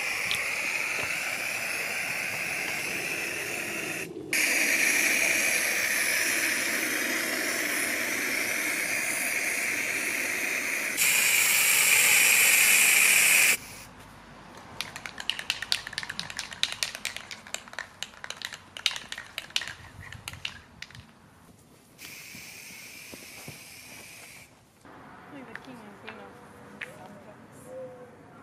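Aerosol can of inverted marking paint spraying onto grass in one long hiss, with a short break about four seconds in and louder from about eleven seconds, cutting off at about thirteen and a half seconds. A run of small clicks and rustles follows, then a fainter second spray near the end.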